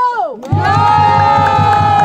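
Dancers' voices holding a long, high-pitched cry over a low, rhythmic thumping. An earlier call drops away just after the start, and the new cry begins about half a second in.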